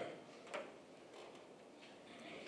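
Quiet room tone with a few faint, short clicks, the clearest about half a second in.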